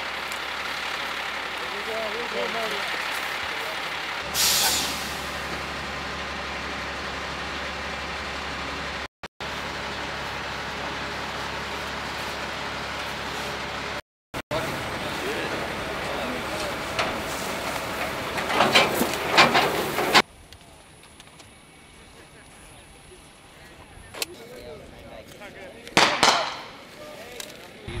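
Military cargo trucks' engines running steadily, with a short, loud air-brake hiss about four seconds in. After about twenty seconds the engine sound drops away to quieter outdoor ambience with a couple of sharp knocks.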